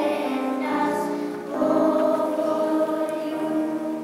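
Children's choir singing held notes in unison, with a short break about one and a half seconds in before the next phrase begins.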